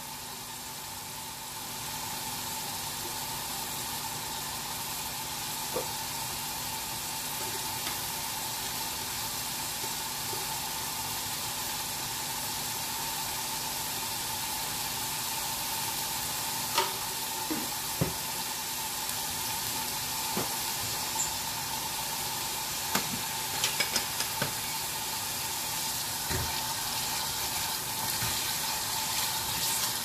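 Onion puree with cumin seeds frying in oil in a stainless steel saucepan: a steady sizzle with scattered small pops, mostly in the second half. The puree's water is cooking off and the oil is separating.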